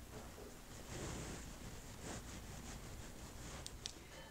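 Faint, soft swishing of a makeup brush blending liquid blush into the skin of the cheek, with a couple of small clicks near the end.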